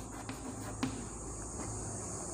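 Chalk scratching and tapping across a blackboard as a word is written, with one sharp tap a little under a second in.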